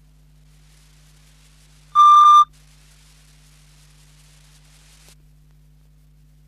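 A single loud electronic beep, about half a second long, about two seconds in, over a faint steady low hum.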